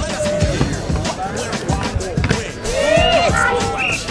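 A skateboard rolling and knocking on a wooden mini ramp as a skater rides and falls to the flat bottom. Voices shout near the end, with music playing underneath.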